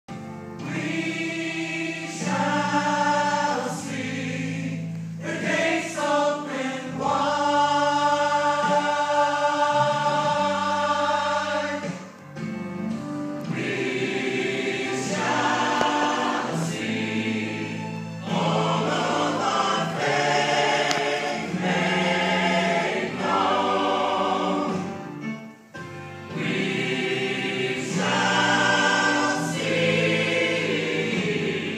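Mixed church choir of men and women singing in held, sustained phrases, with brief breaks between phrases about twelve and twenty-five seconds in.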